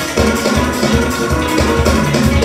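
Recorded music with a steady drum beat and bright pitched instruments, played over the closing card.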